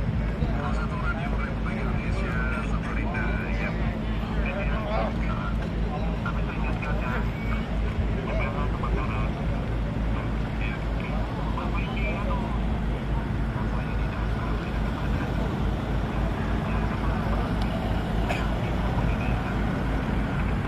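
Steady low hum of idling vehicle engines, with indistinct voices of people talking.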